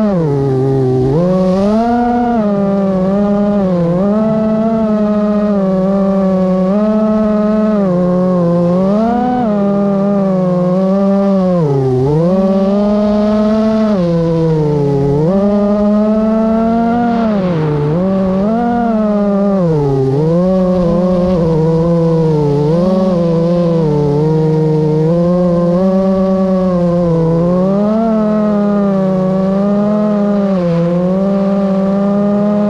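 Multirotor drone's electric motors and propellers whining without a break, the pitch dipping and climbing again every second or two as the throttle is eased off and pushed, heard close up from the aircraft itself.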